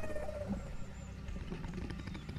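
A low, steady rumble from the film soundtrack, with faint thin tones above it.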